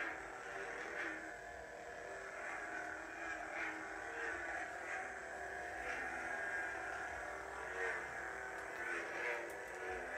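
Hasbro Black Series Force FX Darth Maul double-bladed lightsaber's electronic hum from its built-in speaker, swelling into swooshes again and again as the blades are swung.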